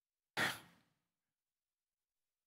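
A man's single short breath, a quick sigh-like exhale about a third of a second in.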